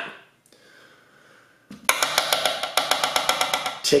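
A metal tablespoon rattled quickly against the olive-oil bottle or bowl: a fast, even run of light clicking taps, about nine a second. It starts about halfway through and lasts about two seconds.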